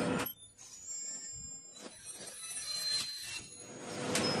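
Dry-mortar valve-bag packing machines at work. A loud steady noise cuts out suddenly just after the start, leaving quieter mechanical clicks and thin high whines.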